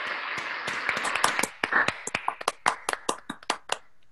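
Applause heard over a video call: dense clapping at first, thinning to separate claps that stop shortly before the end.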